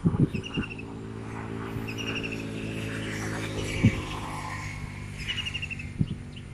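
An engine running steadily at idle, with birds chirping in short trills a few times over it.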